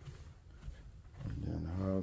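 Quiet indoor room tone, then a man's voice holding one long, low drawn-out sound from a little over a second in, leading into speech.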